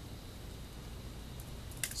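Quiet outdoor background: a steady low rumble, as of wind on the microphone, with a couple of short clicks just before the end.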